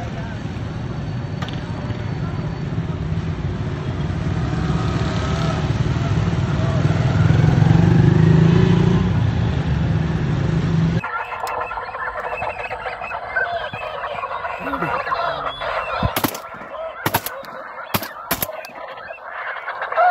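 A flock of geese honking in flight, many birds calling over one another. For the first ten seconds or so a heavy low rumble that swells and fades all but covers the calls. After a cut the honking is clear, with a few sharp clicks a little later.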